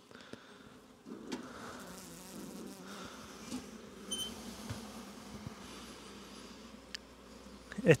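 Honeybees buzzing around an open hive, a steady hum that swells about a second in and keeps on.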